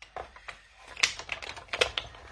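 Clear plastic cutting plates clicking and tapping against each other and the machine as they are pushed into a hand-cranked die-cutting machine, with a short run of sharp clicks in the second half.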